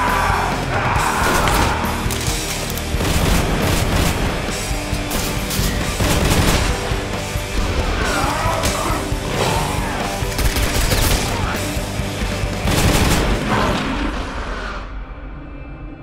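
Dramatic trailer music mixed with rapid gunfire and impacts, loud throughout, fading out over the last two seconds into a low steady tone.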